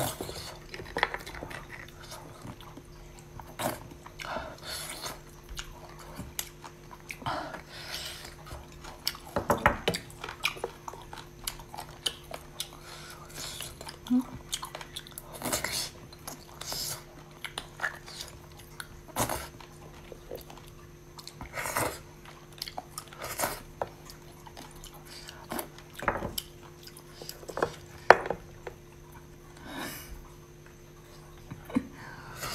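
Close-up eating sounds of beef bone marrow: a metal spoon scraping and clicking against cut marrow bones, with mouth sounds as the marrow is taken off the spoon and chewed. The sounds come in short, separate bursts every second or two, over a faint steady hum.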